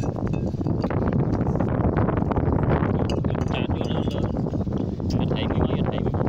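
Wind rumbling steadily on the microphone, with background voices and a few light clinks of a metal spoon against a pot.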